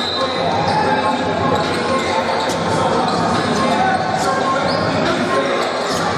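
Crowd chatter filling a large gym, with a basketball bouncing on the hardwood court and scattered short clicks and squeaks of play; a brief high squeak comes right at the start.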